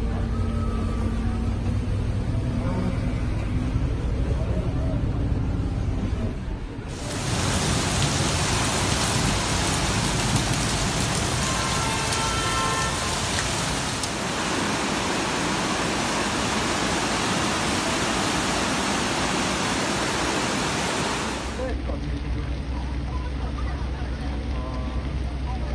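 A low rumble, then a sudden switch to a loud, steady rush of floodwater pouring across a street that lasts about fifteen seconds. The low rumble returns near the end.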